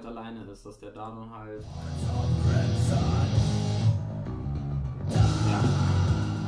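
Rough mix of a black metal song played back, with electric guitar, starting about a second and a half in after a few words of low talk.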